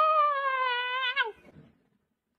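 A woman's long, drawn-out whining cry, held near one pitch and sinking slightly, stopping a little over a second in.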